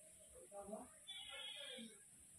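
A faint, drawn-out animal call about a second in, lasting most of a second, with a shorter faint sound just before it.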